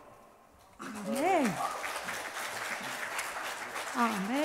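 The choir's last sung note dies away to near silence, then about a second in the audience starts applauding and keeps on clapping. A short call that rises and falls in pitch sounds over the start of the applause.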